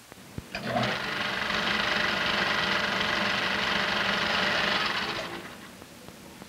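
Reel-fed film editing machine running: a few clicks as it starts, then a steady mechanical whirring clatter that winds down and stops near the end.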